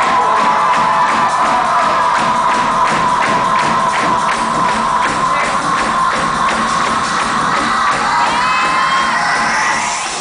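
Live band music with a quick steady beat and a held high note, and crowd cheering and whoops over it. The music eases off right at the end.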